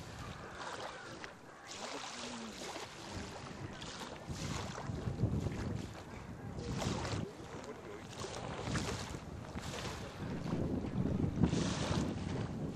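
Small waves washing onto a sandy beach in surges every couple of seconds, with wind buffeting the microphone in low rumbling gusts.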